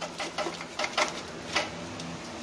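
Irregular light clicks and rattles of a plastic wiring-harness connector and its wires being handled and knocked against the body panel.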